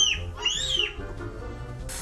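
Toddler screaming in high-pitched arching shrieks: one breaks off just after the start, and a shorter one follows about half a second in.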